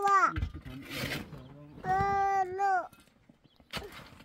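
A young child's high voice calling out in long drawn-out notes, twice, each held for most of a second and falling off at the end.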